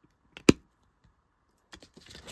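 A sharp plastic click about half a second in as fingers handle a 4K Ultra HD disc in its black plastic Blu-ray case, followed by a few lighter clicks near the end.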